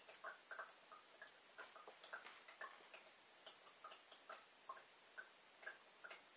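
Faint, irregular drips of filtered water falling from a homemade tuna-can filter into a drinking glass, a few short plinks a second.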